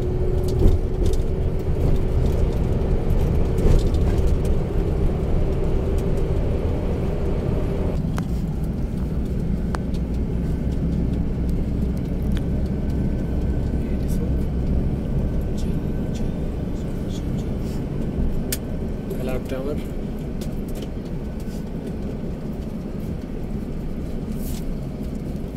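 Engine and road rumble inside a moving bus, with a steady hum that stops about eight seconds in.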